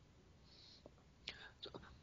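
Near silence between speakers on a video call, with a few faint short breath- or mouth-like sounds in the second half.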